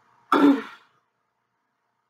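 A person clears their throat once, a short harsh sound about half a second long.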